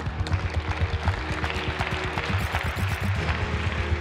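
Audience applauding over background music with a steady low beat.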